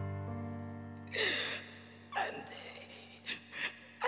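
A sustained piano chord slowly fading under a singer's breathy gasps into the microphone. The loudest gasp comes about a second in, with smaller breaths later.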